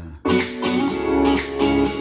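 Guitar music cuts in suddenly about a quarter second in and plays on with sustained chords.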